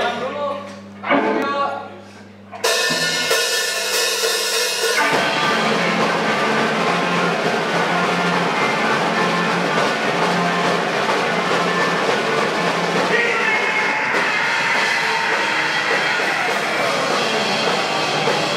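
Live rock band starting a song: a held electric guitar chord rings out about two and a half seconds in, then drums and distorted electric guitars come in together about five seconds in and play on loudly.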